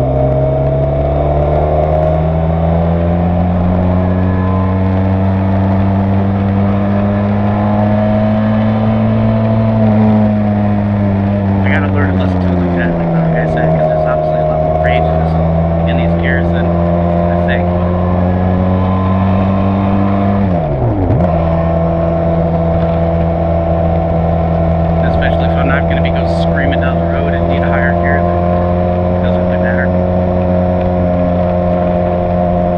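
Benelli TRK 502's parallel-twin engine and exhaust running under way at road speed. The engine note climbs slowly for the first ten seconds, sags around twelve seconds in, then dips sharply and recovers about twenty-one seconds in before holding steady.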